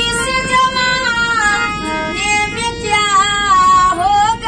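A woman singing a melody solo, her voice sliding and bending between notes.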